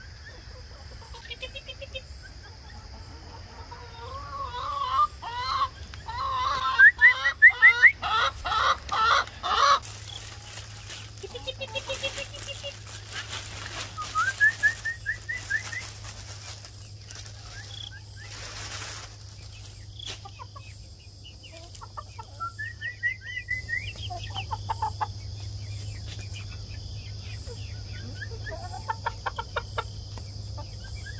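Chickens clucking and squawking, with a loud run of rapid calls about a third of the way in and scattered, quieter rising calls later.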